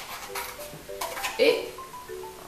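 Scissors snipping through thin cardboard, two short sharp snips about a second apart, over light background music.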